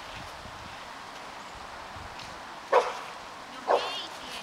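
A dog in protection (defence) training barks twice near the end, about a second apart. Each bark is short and sharp.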